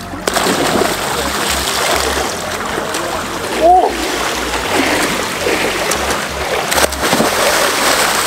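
Water splashing in a swimming pool as a swimmer dives in head-first and then swims hard, thrashing the surface. The splashing starts just after the beginning and carries on at a steady level.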